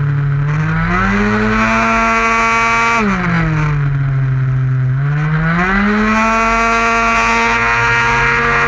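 A 50cc two-stroke racing scooter engine at high revs on track, heard from onboard. Its pitch climbs and holds, drops sharply about three seconds in as the throttle eases through a corner, and climbs back up about two and a half seconds later.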